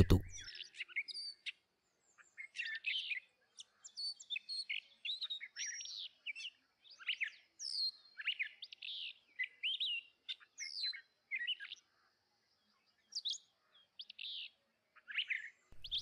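Birds chirping: many short, quick chirps and whistles, some overlapping, with brief gaps between.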